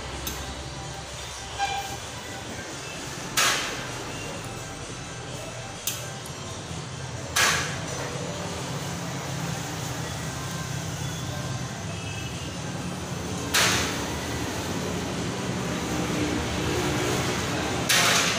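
A few sharp knocks several seconds apart, the strongest about three and a half, seven and a half and thirteen and a half seconds in, each with a short tail, over a steady low hum.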